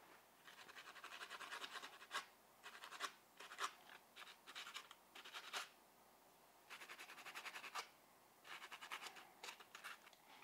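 Fine sanding sponge rubbed quickly back and forth over the metal pickup shoes of a Tyco HO slot car chassis, polishing the dirty shoes clean. The scratching is faint and comes in about five short runs with brief pauses between them.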